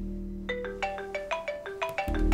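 A phone alarm's marimba ringtone melody: quick, bright mallet notes, about eight of them, starting about half a second in, with no low backing under them.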